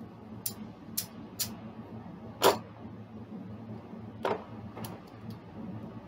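Casino chips clicking together as they are picked up off a craps table layout: about six sharp, separate clicks at uneven spacing, the loudest about two and a half seconds in. A steady low hum runs underneath.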